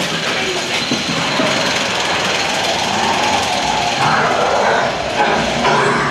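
Matterhorn Bobsleds ride vehicle rattling along its track, a loud, steady mechanical clatter.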